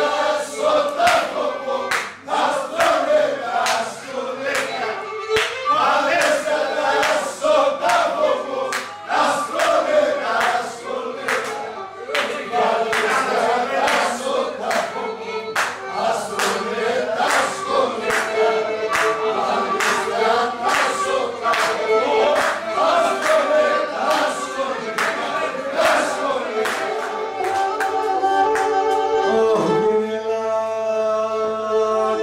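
Live Pontic Greek folk music: several voices singing together with a Pontic lyra, over a steady sharp beat of about one and a half strokes a second. Near the end the singing gives way to long held notes.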